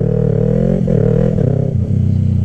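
Yamaha YZF-R3 parallel-twin motorcycle engine pulling away under throttle, heard from on the bike. Its note dips about a second in and again near the end.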